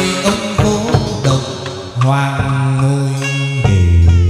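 Hát văn (chầu văn) ritual music: a singer's chanted line with long held notes over a plucked đàn nguyệt (moon lute), with sharp clicking percussion marking the beat.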